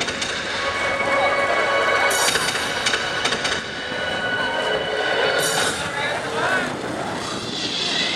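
A person's voice calling out in long held tones, with noise from the crowd behind.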